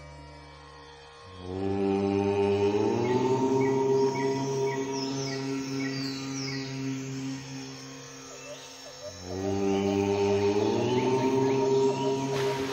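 A voice chanting the Om mantra in two long, held chants: the first begins about a second in and lasts some seven seconds, and the second begins near the nine-second mark. Each chant rises in pitch shortly after it starts. Soft background music plays throughout.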